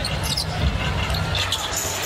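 A basketball being dribbled on a hardwood court: a run of repeated low bounces, over the hubbub of an arena crowd.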